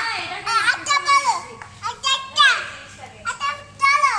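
A young child's voice, speaking in short high-pitched phrases.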